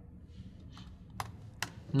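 A few sharp computer-key clicks in the second half, typing a new font size into a document.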